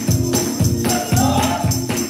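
Gospel praise music with choir singing over a steady beat of about two strokes a second; the voices come in about a second in.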